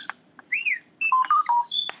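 R2-D2 beeps and whistles from a read-along record, the signal to turn the page, played on a Fisher-Price toy record player: a short rising-and-falling chirp, then a quick run of beeps jumping between pitches, with a click near the end.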